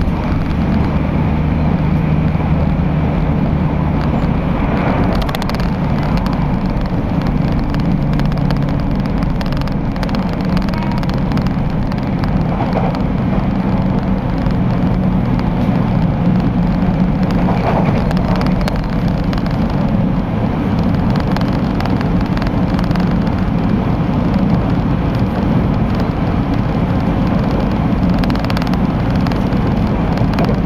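Steady running noise of a local train at speed, heard from inside the carriage: a loud, even rumble of wheels on rails with a low hum underneath.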